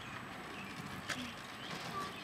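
Faint footsteps on an asphalt driveway with a few small clicks, one sharper knock about a second in.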